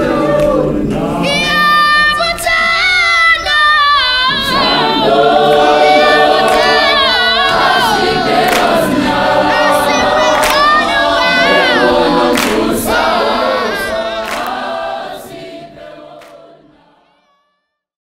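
Large gospel choir of many voices singing live, with scattered sharp percussive hits, fading out to silence near the end.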